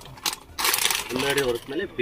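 Clear plastic packaging bag crinkling as a garment is pulled out of it, in one burst about half a second in. A voice talks briefly afterwards.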